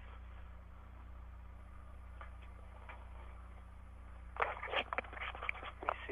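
Low steady hum under quiet room tone. Near the end come a handful of clicks and knocks, like something being handled.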